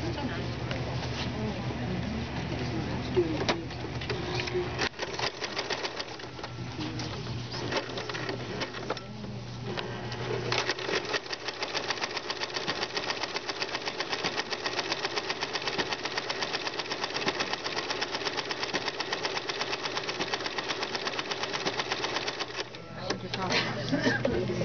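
Electric sewing machine fitted with a ruffler foot, stitching and pleating a fabric ruffle in a fast, even rhythm of stitches. It sews more unevenly at first, pauses briefly about nine seconds in, then runs steadily until a second or two before the end.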